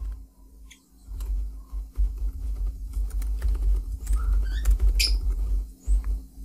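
Typing on a computer keyboard: a run of irregular keystroke clicks over a strong, deep low rumble, with a faint steady hum underneath.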